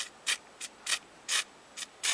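Aerosol spray-paint can hissing in six short bursts as the nozzle is tapped in quick puffs.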